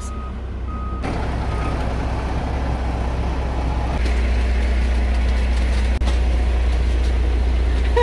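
Concrete mixer truck's diesel engine running with its reversing alarm beeping a few times near the start. About halfway through the sound turns to a louder, deeper steady drone of the truck running while it pours concrete.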